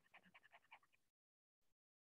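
Near silence: a very faint trace of sound in the first moment, then dead silence.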